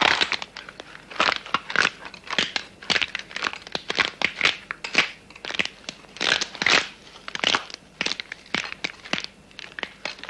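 Loud, crisp crunching of someone chewing food bitten off by hand, in quick irregular crunches about two or three a second.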